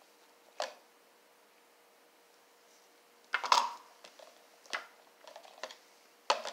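Kitchen handling noise from plastic cups and a plastic measuring jug on a stone countertop. It starts with a click, then a louder plastic clatter about three and a half seconds in, a knock and a few small taps, over a faint steady hum.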